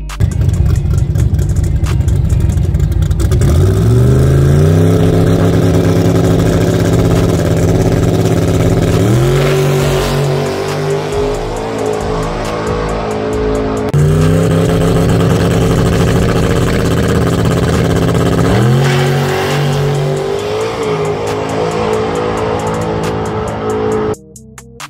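Race car engine at full throttle on a drag-strip pass, loud throughout. Its pitch climbs and then holds several times, with a sudden jump in loudness about halfway through.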